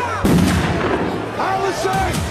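A sudden deep boom about a quarter second in, trailing into a low rumble; near the end, voices rise over it.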